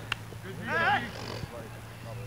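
A man's voice calling out briefly about half a second in, over a steady low hum, with a single sharp knock right at the start.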